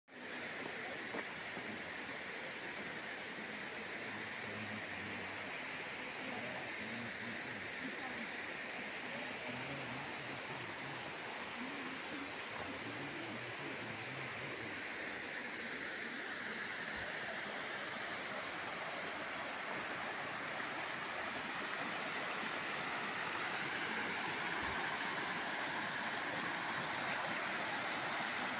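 Steady rush of a waterfall, thin streams of water spilling down moss-covered rocks, growing a little louder over the second half.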